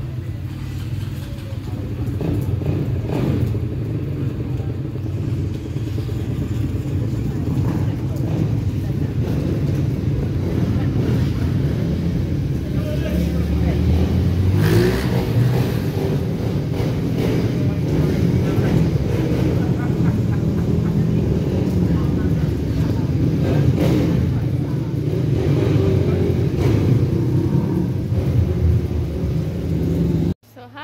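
Motorcycle engines running at the curb, with an engine revving up and down about halfway through, over a steady low rumble of traffic and background voices.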